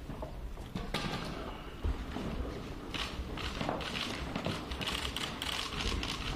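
Rapid, irregular clicking of press photographers' camera shutters, thickening into dense volleys in the second half.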